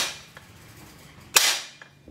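A sharp metal-on-metal hammer blow about one and a half seconds in, with a short ringing tail, knocking a stiff Peugeot 206 rear torsion bar out of the axle arm.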